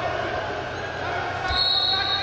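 Arena crowd noise with voices shouting. About one and a half seconds in comes a dull thud on the wrestling mat, and at the same moment a steady high whistle begins, as one wrestler takes the other down.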